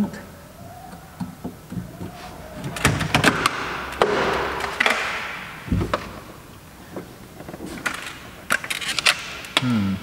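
Handling noise from work inside a car's bare front door while its mirror wiring is disconnected: scattered plastic clicks, a stretch of rustling about three to five seconds in, and a single dull thump about halfway.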